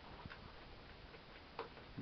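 Near quiet with a few faint clicks as the air sled's starter is tried and the engine does not turn over, which is suspected to be a dead battery.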